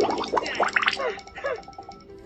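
A cartoon character laughing in a string of quick, gurgly bursts over the hiss of a running shower, the laughter trailing off near the end.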